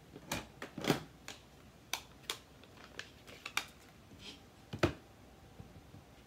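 Irregular sharp clicks and taps of hard plastic, about nine spread over a few seconds, the loudest about a second in and near five seconds in: an ink pad in its plastic case and a clear acrylic stamp block being handled and tapped together during inking.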